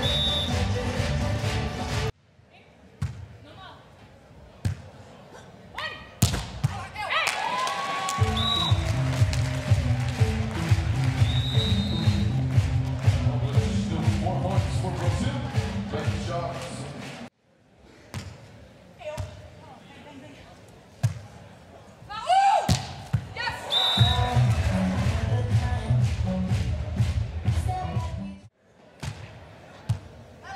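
Volleyball hits on a beach volleyball court: several single sharp smacks spread through, the loudest ball contacts being spikes. A short piece of music opens it. Two long stretches of loud arena sound, music and crowd mixed, lie between the hits.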